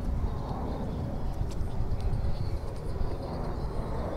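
Low, uneven outdoor rumble with no clear single source, with a few faint clicks.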